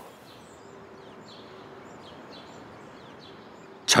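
Steady outdoor background noise with a few faint, high bird chirps.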